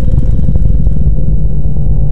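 Logo sting sound effect: a loud, deep rumble with a rapid flutter, under a crackling hiss that fades out about a second in.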